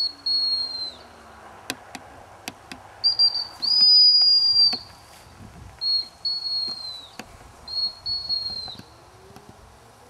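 Gundog handler's whistle blown four times, each a short pip followed by a longer steady blast that dips at its end, signalling commands to a Labrador retriever. A few faint clicks fall between the blasts.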